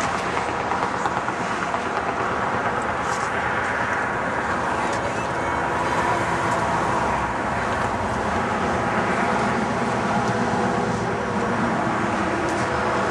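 Steady road-traffic noise, a continuous even rumble of vehicles, with indistinct voices mixed in.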